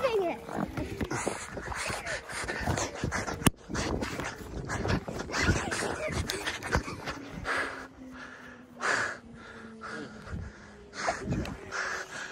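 Thuds and rustles from a handheld phone being jostled as its holder runs across the grass, coming several times a second. A few louder breathy bursts come after the middle.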